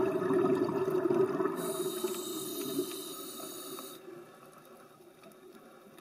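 Scuba diver's breathing through a regulator, heard on the underwater camera: a loud bubbling rush of exhaled air, with a hiss of air through the regulator from about a second and a half in. Both fade out by about four seconds in.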